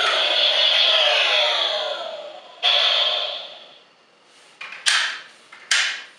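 Electronic switch-off sound effect of the Transformers Energon Megatron toy sword playing through its small built-in speaker: several tones glide downward together for about two and a half seconds, then a second short burst sounds and fades. Near the end come a few sharp plastic knocks, two of them loud, as the sword is handled.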